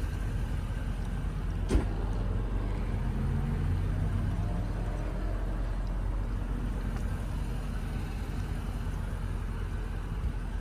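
Steady low vehicle rumble with a faint hum that swells for a couple of seconds in the middle, and a single sharp knock a little under two seconds in.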